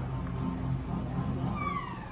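Soft background music of sustained low notes. Near the end, a single brief high cry falls in pitch.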